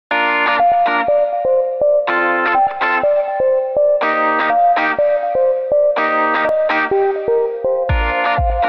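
Opening theme music: a full chord struck about every two seconds over a melody of short separate notes.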